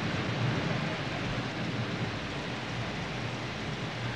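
Steady, even background noise from a film soundtrack, with no distinct events in it.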